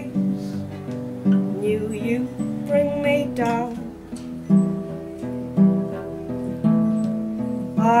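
Acoustic guitar strummed in a slow rhythm, its chords ringing on between strokes, with a strong strum about once a second in the second half.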